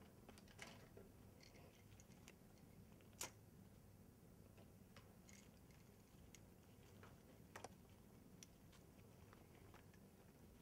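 Near silence over a low room hum, with faint scattered clicks and rustles of gloved hands handling plastic IV administration-set tubing. One sharper click comes about three seconds in.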